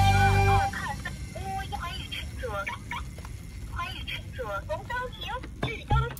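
Music ends in the first second. Then an electronic toy bus plays repeated high, sweeping voice-like sounds.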